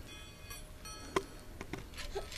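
A few faint, sparse clicks from a small handheld toy rattle being moved by a baby, the sharpest about a second in.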